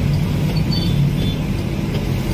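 Steady low engine and road rumble of a moving vehicle, heard from inside the vehicle, with a couple of faint high-pitched chirps about a second in.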